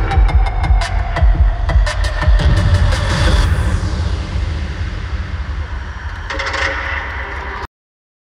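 Electronic dance track for a stage dance performance, with a heavy bass and sharp percussion hits in the first half that thin out in the second. It cuts off abruptly near the end.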